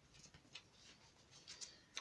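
Near silence: room tone, with a few faint, soft rustles about half a second and a second and a half in.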